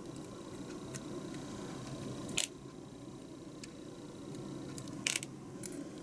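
Hobby nippers snipping plastic model-kit parts off the runner: two sharp snaps about two and a half seconds and five seconds in, the second a quick double, with a faint click about a second in.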